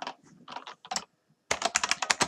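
Computer keyboard keystrokes: a few scattered key presses, then a fast, louder run of typing starting about one and a half seconds in.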